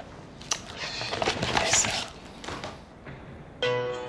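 Rustling and light knocks of a folder's pages being handled, then near the end a smartphone starts ringing with a melodic ringtone.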